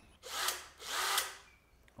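Bosch Professional cordless drill/driver running in two short bursts of about half a second each, turning a bolt at an e-bike's handlebar stem.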